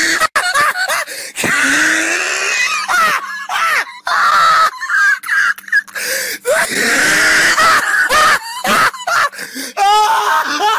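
A man laughing hard and at length, high-pitched and breathy, in repeated bouts broken by short gaps for breath.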